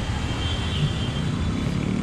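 Hero XPulse 200's single-cylinder engine running steadily at low revs, a low even rumble with traffic around it.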